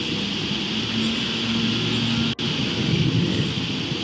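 Steady outdoor noise through a police body camera's microphone: a low rumble with hiss. The sound drops out briefly a little past the middle.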